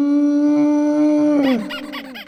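An animal-like call used as a sound effect over the end card. It is one long held note that rises slightly in pitch, then about one and a half seconds in it falls away and breaks into a rapid run of squeaky, warbling chirps.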